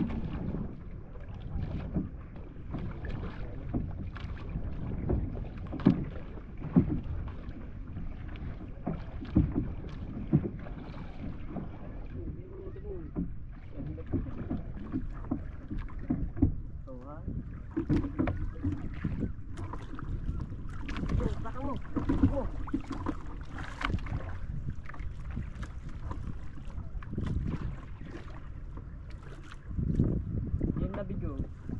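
Small wooden outrigger canoe afloat on the sea: water slapping and splashing against the hull in irregular knocks, with wind buffeting the microphone.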